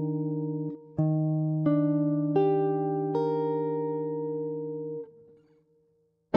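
Clean-toned electric jazz guitar comping an Ebmaj7 chord. A ringing chord is damped, then picked again in four strokes about 0.7 s apart that build the chord up note by note. The chord rings on and is muted about five seconds in.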